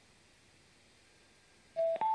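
Near silence, then near the end a Milwaukee M12 jobsite radio gives a two-note rising electronic beep, its chime on pairing automatically with the phone over Bluetooth.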